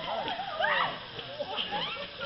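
Voices of runners in a muddy swamp: a high, wavering shout or cry that swoops up and down, loudest just before the middle, over a background of other voices.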